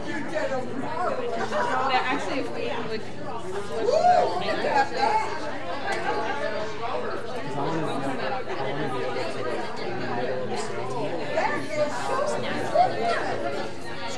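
Indistinct chatter of many people talking at once, echoing in a large hall.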